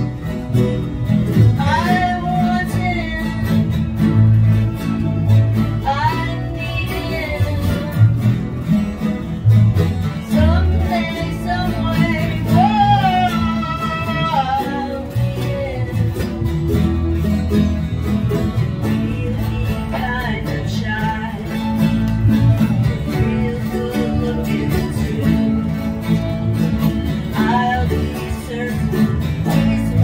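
Acoustic guitar strummed as accompaniment while a woman sings over it, her voice coming and going across the passage.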